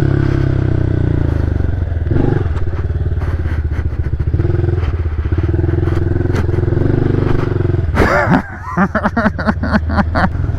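Honda CRF110F pit bike's small air-cooled single-cylinder four-stroke engine running under way, the throttle opening and closing as it rides; near the end the sound turns choppy and uneven.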